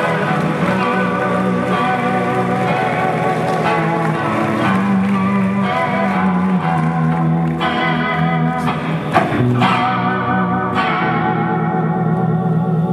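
Solo guitar played live, sustained chords ringing, with a run of sharp strummed strokes in the second half.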